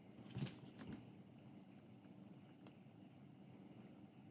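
Near silence: room tone, with two faint, brief soft sounds in the first second.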